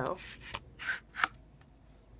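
A few short scraping, rustling strokes as a CD album's booklet and disc are shaken and slid out of the album's sleeve. The strokes come within the first second or so.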